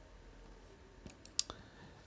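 A quick cluster of four or so faint, sharp clicks about a second in, over quiet room tone.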